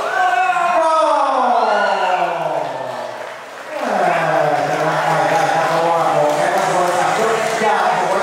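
A man's voice over the arena's public address, drawn out in long calls: the first falls slowly in pitch for about three seconds, then, after a short dip, a second long call holds a steady low pitch. This is the ring announcer calling the result of the bout.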